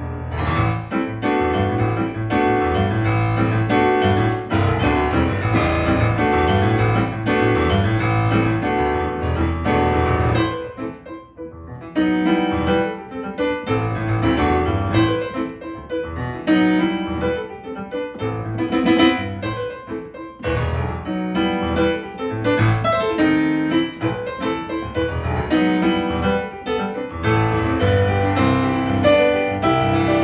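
Solo jazz piano played on a digital stage piano, with a bass line and chords in full flow and a short softer passage about eleven seconds in.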